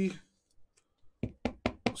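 A quick run of about five light knocks over the second half, from trading cards in clear plastic holders being handled and knocked against the tabletop. The end of a man's spoken word comes just before a short quiet gap.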